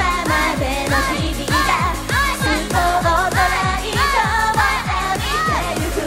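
Japanese idol pop song performed live: young women's voices singing over a recorded backing track with a steady drum beat.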